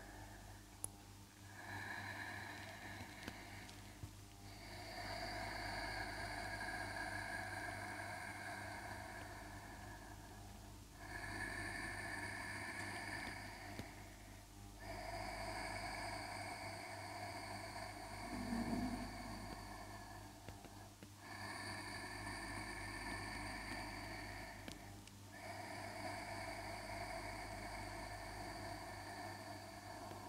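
A woman's slow, faint yoga breathing, ujjayi style: six long hissing breaths drawn through the throat, each lasting four to six seconds, with short pauses between inhales and exhales.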